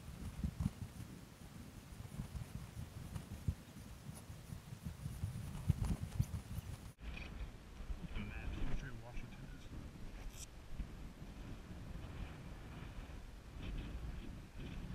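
Wind rumbling on a body-worn camera's microphone, with a hiker's uneven footsteps on bare granite. The sound cuts off sharply about seven seconds in and is followed by lighter wind with faint voices.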